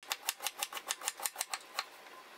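Knife shredding cabbage on a wooden cutting board: a quick, even run of chops, about seven a second, with each stroke knocking the board. The chopping stops shortly before the end.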